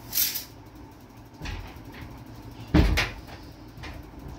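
A room door being swung and banged shut, the loudest sharp knock coming a little under three seconds in with a quick second rattle right after; a softer knock and some rustling come before it.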